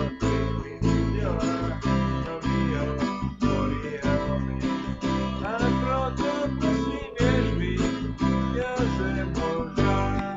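Bass guitar and acoustic guitar playing a slow song together: the bass holds low notes in an even rhythm of about two a second, with the guitar strummed and a melody line moving above it.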